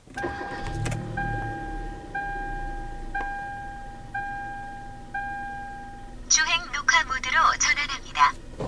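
A car engine starts and settles to idle. Six evenly spaced electronic chimes follow, about one a second, from the car's ignition warning. Near the end an electronic voice announcement plays as the dashcam comes on.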